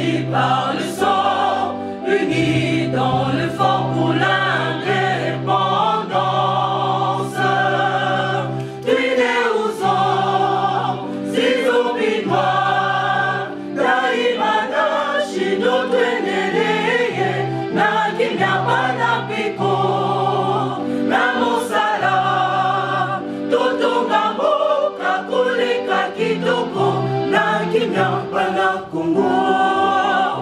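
Choral music: a group of voices singing together over a bass line of low notes held about a second each, with occasional sharp percussive hits.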